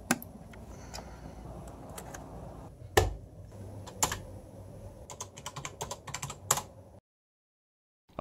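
Computer keyboard and mouse clicks: a few scattered clicks and a heavier thump, then a quick run of clicks, over a faint steady hum. The sound cuts out to silence about a second before the end.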